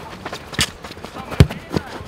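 Football being kicked: a loud thud about one and a half seconds in, with a lighter hit shortly before it.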